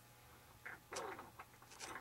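Faint handling noises: a few soft clicks and rustles as hands move a foam RC flying wing and the wiring on it.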